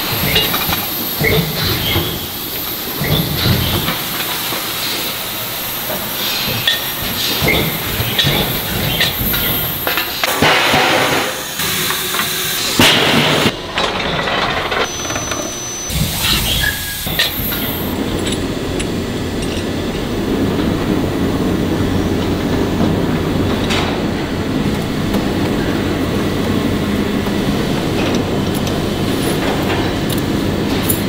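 Heavy metalworking shop noise. Metal parts clank and knock over running machinery, with short bursts of hissing near the middle. In the second half it settles into a steady machine rumble with a light rattle.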